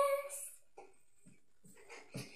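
A girl's sung note, held steady and then fading out about half a second in, followed by near silence broken by a few faint, short sounds.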